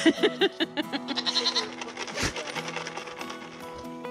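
Background music with steady held notes over a goat pen. Short bleats from Nigerian Dwarf goats and a quick run of knocks come in the first second or two.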